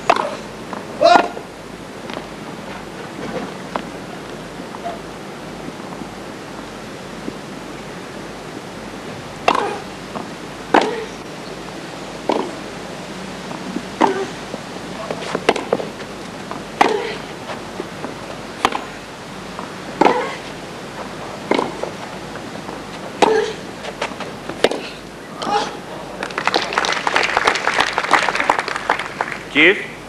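Tennis rally on a hardcourt: sharp racket hits on the ball about every second and a half, then a few seconds of crowd applause near the end as the point is won.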